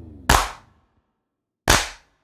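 Two sharp percussive hits from the song's percussion, one about a quarter of a second in and one near the end, each dying away quickly, with dead silence between them while the rest of the music has stopped.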